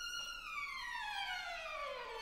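Solo violin holding a high note, then sliding slowly and smoothly down in a long glissando from about half a second in to the end.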